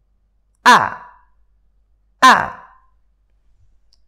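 A voice twice pronouncing a short, sharp 'a' with an abrupt glottal-stop onset, the sound of the Arabic letter hamza (ء); each falls away quickly.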